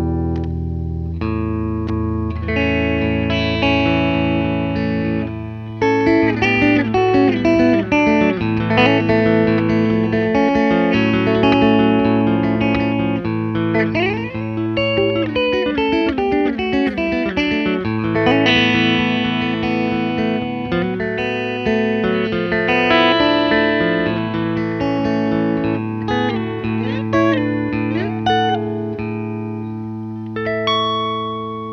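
Telecaster electric guitar with Coils Boutique H&H handwound Alnico V pickups, played as a melodic lead line: held notes at first, then quicker single-note runs from about six seconds in, with bent notes sliding in pitch around the middle and again near the end.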